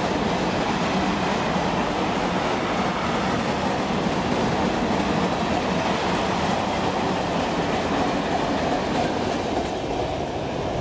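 Freight train of loaded-looking hopper wagons rolling past on a curve: a steady rumble of wheels on rail with clickety-clack. Near the end the last wagon passes and the noise thins out.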